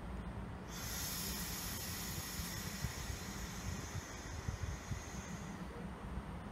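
A sudden, steady high-pitched hiss of compressed air venting from the EG2Tv Ivolga electric train's pneumatic system. It starts about a second in and lasts about five seconds over a steady low rumble.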